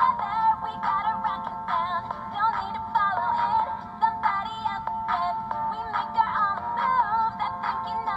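Barbie Rock 'n Royals singing doll in princess mode, playing a pop song with a female vocal through its built-in speaker.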